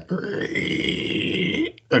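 A man's voice imitating a light squeaky sound like fingers dragging across a wet car window: one drawn-out, breathy squeak with a whistly edge, lasting about a second and a half.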